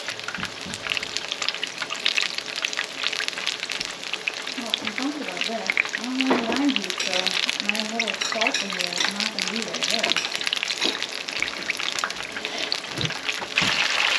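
Egg rolls deep-frying in hot oil in a skillet: a steady, dense crackling sizzle of fine pops.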